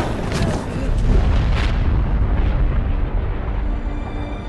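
Film sound effects of an erupting volcano: a loud, deep rumble with sharp cracks of bursting rock about a third of a second and a second and a half in. Music plays under it.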